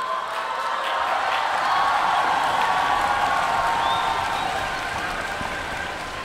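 Concert hall audience applauding and cheering, swelling to a peak about two seconds in and then slowly dying away.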